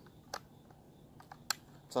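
A few small clicks of a rifle being handled, the loudest and sharpest about one and a half seconds in, as the rifle's ambidextrous safety lever is set.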